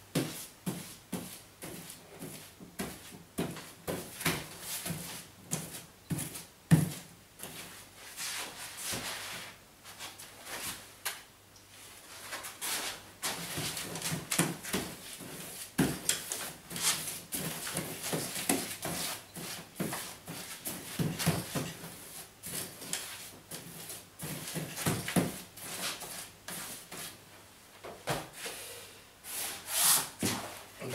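A wide paste brush is swept back and forth over wallpaper on a wooden pasting table, spreading ready-mixed paste in a run of rough, irregular rubbing strokes. There is one louder knock about a quarter of the way through.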